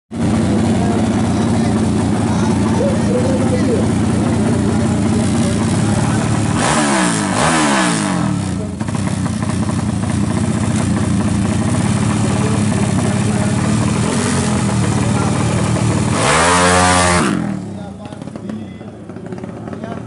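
Drag-race motorcycle engine idling unevenly, blipped twice about seven seconds in and revved once more near the end with a rising then falling note, after which the engine sound drops away.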